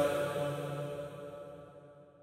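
The last chanted note of a noha, a lament voice holding its pitch and fading out steadily until it is gone near the end.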